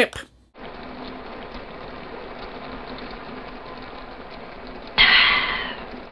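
Steady hiss of an old film soundtrack with no dialogue, then a louder rush of noise about five seconds in.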